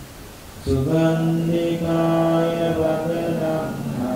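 Buddhist monk chanting into a microphone in one man's voice: a short pause, then under a second in a long line sung on long, steadily held notes.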